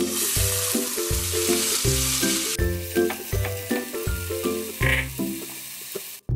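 Soaked basmati rice sizzling as it is poured into hot oil in a saucepan. The sizzle starts suddenly and is loudest for about the first two and a half seconds, then goes on more quietly while the rice is stirred with a wooden spoon. Background music with a steady beat plays throughout.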